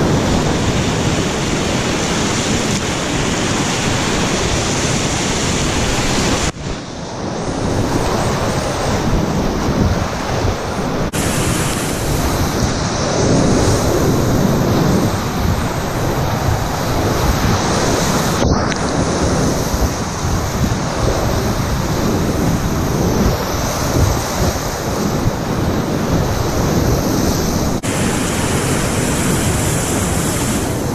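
Loud, steady rush of high-flow class IV whitewater rapids around a packraft, with waves breaking and spray hitting the boat and camera. The noise drops out briefly a few times.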